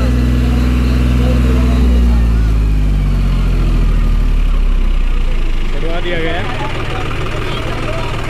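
John Deere 5105 tractor's three-cylinder diesel engine running hard with the tractor in soft sand. Its pitch drops from about two seconds in, and it settles to a lower, rougher run near the end.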